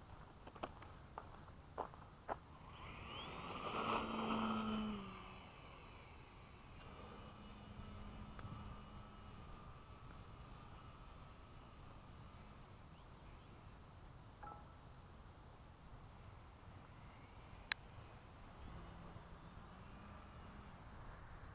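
Electric RC Gee Bee model airplane's motor and propeller whining as it passes close overhead, swelling and then dropping in pitch as it goes by about four to five seconds in, then a faint steady hum as it flies farther off. A few sharp clicks early on and one sharp click near the end.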